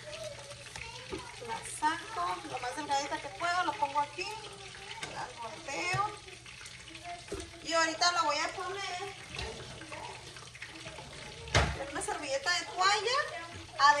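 Voices talking in the background over a steady low hum, with a single sharp knock a little before the end.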